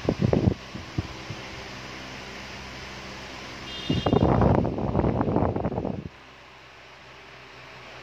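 Usha Maxx Air 400 mm stand fan running with a steady hum and rush of air. About halfway through, its airflow buffets the microphone for roughly two seconds as rough wind noise, the loudest thing here. After that the fan's steady sound settles lower.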